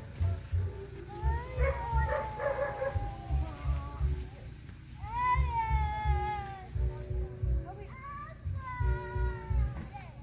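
An animal's three long, drawn-out cries, each falling in pitch, over low rumbling bumps of wind or handling on the microphone.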